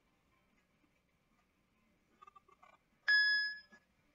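Near silence, then about three seconds in a single short electronic beep: one clear tone with overtones that starts suddenly and fades out in under a second.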